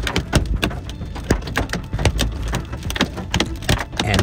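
Hailstones pelting a moving vehicle in many irregular clicks and knocks, over the low rumble of the car driving on a hail-covered road.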